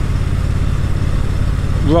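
Triumph Bonneville T100 parallel-twin engine running at a steady low note while cruising, with steady wind and road noise.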